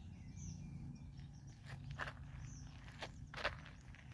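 Faint footsteps on a gravel path, a few soft crunching steps about two seconds in and twice more near three seconds, over a steady low rumble.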